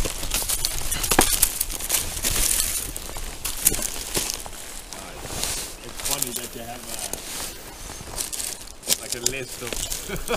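Dry reed thatch and reed bundles rustling and crackling as they are handled and brushed against, with many sharp crackles, busiest in the first few seconds.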